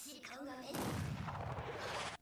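Artillery explosions from an anime battle scene, a dense low rumble of blasts starting about three-quarters of a second in, after a character's line of dialogue; heard at low volume.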